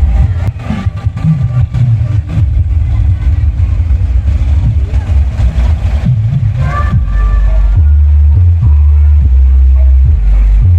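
Loud, bass-heavy music from a parade sound system, its deep bass dominating throughout.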